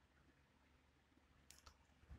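Near silence: room tone, with two faint clicks about one and a half seconds in.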